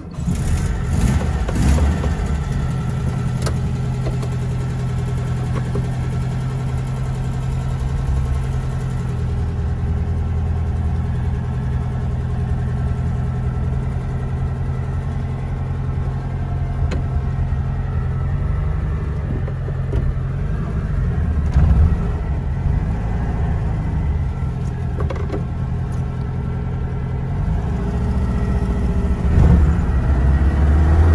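Classic VW Beetle's air-cooled flat-four engine running while driving, heard from inside the cabin. The engine note holds steady for long stretches and changes pitch twice, around the middle and near the end, as the car is shifted and the engine revs up or down.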